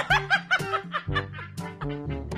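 A person laughing in a quick run of short, rising-and-falling ha-ha notes in the first second or so, over background music with a steady beat.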